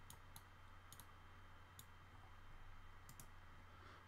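Near silence with a few faint, irregularly spaced computer mouse clicks and a steady low hum.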